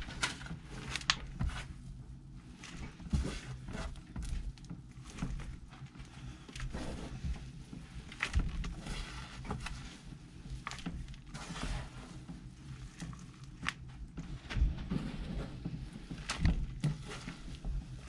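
Hands digging and scooping damp worm-bin bedding of castings and shredded paper into a mesh sifting pan: irregular rustles and soft thuds with each handful.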